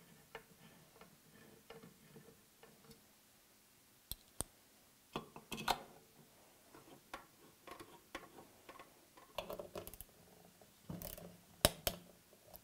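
Small metallic clicks and taps of a T-handle hex key turning screws into an aluminium gripper profile, with louder knocks as metal tools are handled near the end.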